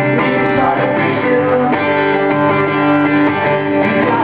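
Live performance of a song with strummed guitars carrying the music, with little singing in this stretch.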